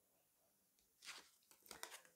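Tarot cards being handled: a short rustle about halfway through, then a few quick light clicks near the end.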